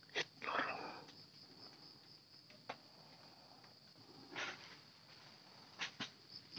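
A single air-rifle shot, a sharp short crack just after the start, followed at once by a brief burst of rustling noise. A few fainter clicks and rustles come later, over a steady high-pitched whine.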